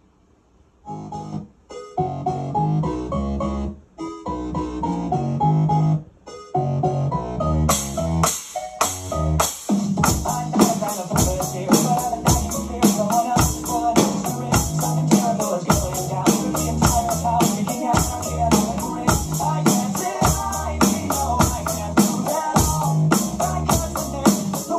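Electronic dance backing track starting about a second in with synth chords and bass, broken by a few short pauses. From about eight seconds in, drums on an Alesis electronic drum kit join with a fast, steady beat over the track.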